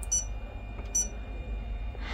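Two short high-pitched key-press beeps about a second apart from a Lewanda B200 battery tester's membrane keypad as test settings are entered.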